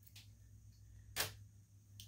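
A 1/64 scale diecast model car set down on a plastic diorama base: one sharp small click about a second in, after a fainter tick, over a low steady hum.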